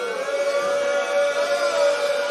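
A male voice holding one long sung note of a mourning chant, steady with a slight waver midway.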